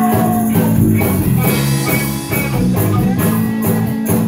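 Live rock band playing: electric guitar, acoustic guitar and drum kit, heard loud and steady from the audience.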